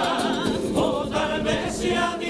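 Male carnival comparsa choir singing a pasodoble in several voices with vibrato, with a few drum strokes underneath.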